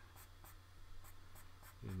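Light, irregular scratching strokes of a pen drawing on paper, a few strokes a second.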